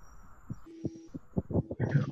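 A brief hiss of an open video-call microphone, then scattered faint clicks that thicken into the hesitant start of a voice near the end.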